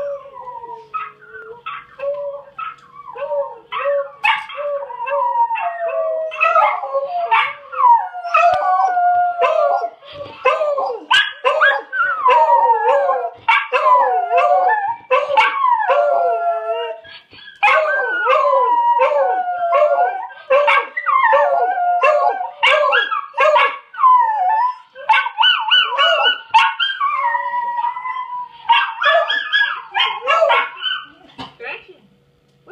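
A miniature schnauzer and a beagle howling together in answer to a recording of their own howls, the overlapping howls wavering up and down in pitch. Short repeated yips open it, and the long howls build from about six seconds in, with sharp yips and barks scattered through.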